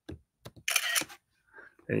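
A few light clicks, then a short camera shutter sound about two-thirds of a second in as a picture is taken.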